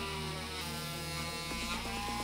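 Cordless Parkside oscillating multi-tool buzzing steadily as its blade cuts through a white plastic pipe.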